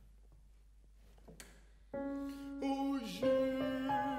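Near silence for about two seconds, then a grand piano comes in suddenly with slow, held chords that change a few times.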